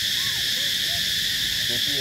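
Steady, high-pitched drone of insects, holding unchanged throughout, with a faint voice speaking near the end.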